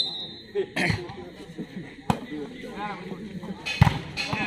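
Volleyball struck by players' hands during a rally: three sharp hits, about one second in, about two seconds in, and near the end, when the ball is spiked at the net. Voices of players and spectators go on underneath.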